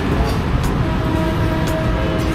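Street background noise: a steady low rumble, with a steady pitched tone coming in about a second in and holding.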